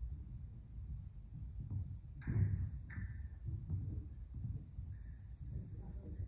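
Steel fencing sparring: fencers' footwork thudding and shuffling on a wooden hall floor, with two sharp sounds a little over two seconds in and just under three seconds in, the first the loudest.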